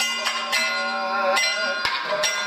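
Kathakali accompaniment music: ringing metal cymbals and gong over a few sharp drum strokes, with a voice holding a wavering sung note through the middle.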